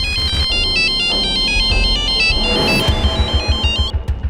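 Mobile phone ringing with a melodic electronic ringtone, a quick run of high stepping notes that stops near the end, over background music with a low pulsing beat.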